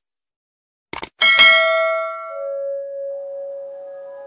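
Subscribe-button sound effect: a short mouse click about a second in, then a notification bell ding that rings out and slowly fades, with a lower ringing tone holding on after it.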